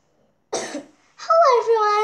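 A child coughs once, sharply, then starts speaking in a drawn-out voice that falls in pitch and holds.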